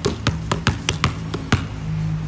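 A basketball bouncing on tiled paving in quick, unevenly spaced dribbles, about eight bounces that stop about a second and a half in: dribbling done the wrong way, without a steady rhythm. Background music plays underneath.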